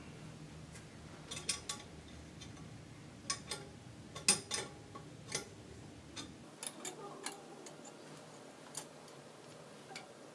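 Scattered light metallic clicks and ticks as nuts are twisted down by hand on the metal threaded rods of a column still, snugging up the top nuts.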